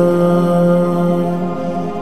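Arabic devotional chant, a sung prayer of supplication, with the voice holding one long steady note.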